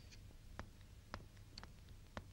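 Near silence with three faint, sharp clicks about half a second apart.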